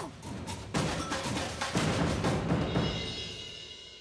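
Background soundtrack music driven by drums and percussion hits, swelling about a second in and getting quieter toward the end.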